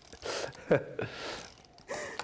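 Card stock being handled and rubbed flat by hand on a glass craft mat: two short stretches of dry, hissy rustling. A brief vocal sound, like a breath or laugh, comes about three-quarters of a second in and again near the end.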